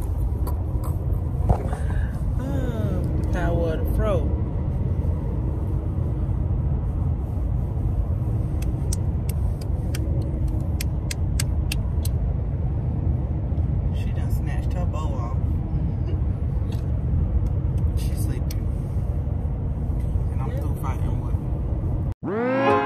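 Steady low rumble of road and engine noise inside a moving car. Brief voice sounds come early on the rumble, and a run of sharp clicks from handling the phone falls around the middle.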